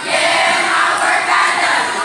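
A group of teenage girls shouting together in a loud crowd yell that eases off near the end.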